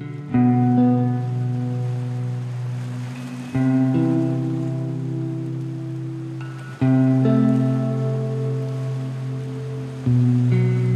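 Instrumental intro of a soft rock song: a chord is struck about every three seconds and left to ring, over a soft steady hiss.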